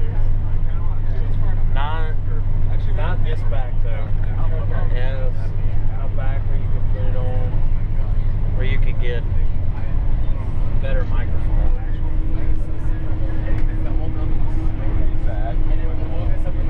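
Bus engine and road noise droning steadily inside the cabin while it drives along a highway, with people's voices talking indistinctly over it on and off.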